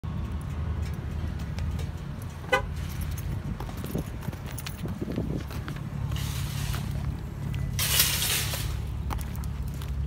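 Car traffic: a steady low engine rumble, with a short car-horn toot about two and a half seconds in and a brief burst of hiss near eight seconds.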